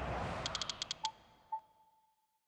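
Logo sound effect for a camera-shutter animation: a whoosh, then a quick run of about seven camera-shutter clicks, then two short ringing tones, the second fading out.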